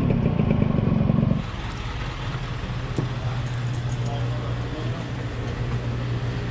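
Small motorbike engine running with a fast, even pulse, cutting off about a second and a half in. A steady low hum follows, from the shop's refrigerated drink coolers.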